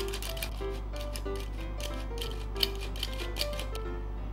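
Hand-squeeze stainless-steel flour sifter clicking and rasping rapidly as its handle is worked to sift powder into a bowl, the clicking stopping shortly before the end. Light background music plays throughout.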